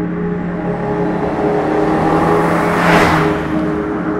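Peugeot 205 XS with its carburetted four-cylinder engine passing by under acceleration: the engine note rises in pitch and the sound swells to a peak about three seconds in, then quickly fades.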